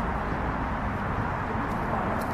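Steady outdoor background noise, heaviest in the low range, with no distinct sound standing out.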